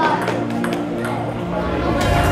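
Table tennis ball knocking sharply off paddles and table, several separate clicks, under background music.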